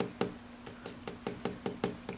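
Fingertip tapping on a glass terrarium, a quick run of light taps, about five a second, to draw a bearded dragon's attention to its live prey.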